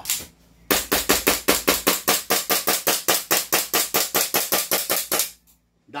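Gas blowback airsoft pistol (a Staccato replica) fired empty of BBs in a rapid string of about thirty sharp cracks, about seven a second, venting the gas left over after a full magazine. The string stops abruptly near the end.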